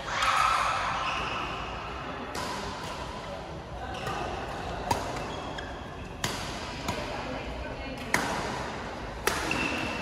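Badminton rally: a racket strikes the shuttlecock with a sharp crack about once a second, five times in the second half, over background voices in the hall.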